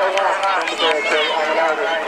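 Several people's voices talking at the same time, steady and fairly loud throughout, with no single voice standing out as clear words.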